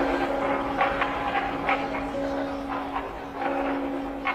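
A steady low drone tone held under irregular crackling glitch clicks, about two a second: eerie sound design in an edited entrance-video soundtrack.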